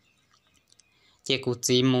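A near-silent pause with a few faint clicks, then a man's narrating voice starts again about a second and a quarter in.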